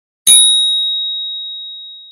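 A single bright bell-like ding, struck once and ringing on one high tone that fades away over about two seconds.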